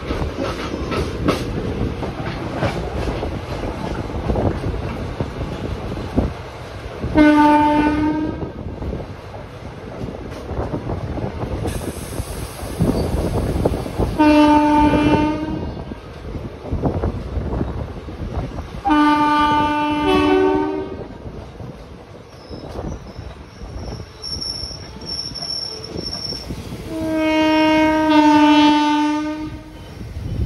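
Passenger train running on the rails, with a steady rumble and rattle of wheels over the track. A train horn sounds four long blasts of one to two and a half seconds each; the last two change pitch partway through.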